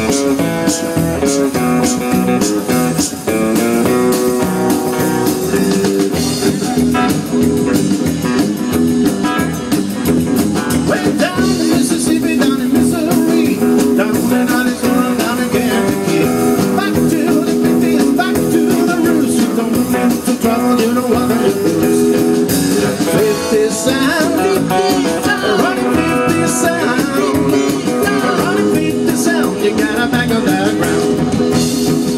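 A live 1950s-style rock and roll band playing: electric guitar over upright double bass and drums, with sharp cymbal hits in the first few seconds and a singer's voice coming in over the band in the last stretch.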